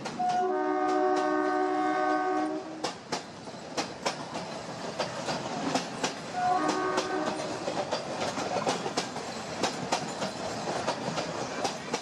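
Passing train: a horn sounds one long blast of about two seconds, then a shorter blast about six and a half seconds in, over the steady clickety-clack of wheels running over rail joints.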